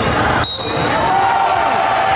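Gym crowd noise during a basketball game: many voices talking and shouting over the sounds of play on the court.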